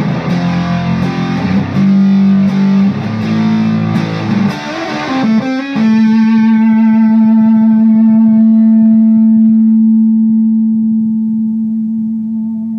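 Electric guitar played through a Mojo Hand FX Pompeii silicon fuzz pedal: a run of distorted notes, then about six seconds in a single note held with slight vibrato, sustaining and slowly fading.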